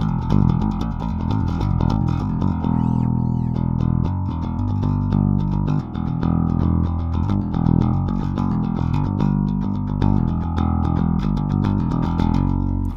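G&L L-2000 Tribute four-string electric bass played in a driving rock line of quick, repeated notes. Its active preamp is switched to the high-end boost, which extends the highs and brings out a sharp attack on each note, a bright piano-string-like sound.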